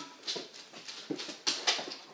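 A pet dog whining in short, broken sounds.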